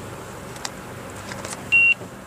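A single short, high electronic beep from a handheld card payment terminal, about a quarter second long, near the end.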